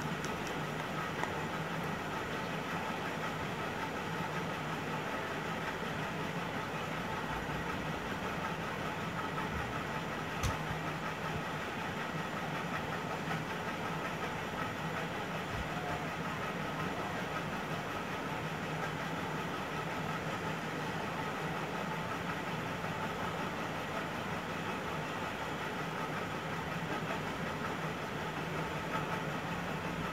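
Steady background hum and hiss of a running machine, unchanging throughout, with a single short click about ten seconds in.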